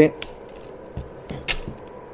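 Xiaomi Smart Air Purifier 4 Compact's fan running steadily at its higher manual-mode speed, a faint even whoosh with a slight hum. There is a sharp click about one and a half seconds in.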